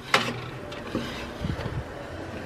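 An oven door clicks open sharply, then low clunks follow as the oven rack and a foil-lined baking sheet are pulled out.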